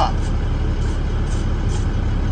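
Truck engine idling with a steady low rumble, heard from inside the cab.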